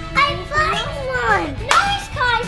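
Children's excited, wordless vocalising: high, sliding exclamations and squeals, with one loud shout near the end.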